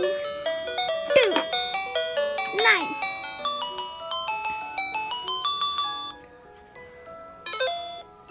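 Children's electronic learning laptop toy playing a tune of quick stepped electronic beeps as a game starts, the tune stopping about six seconds in; a short beep near the end.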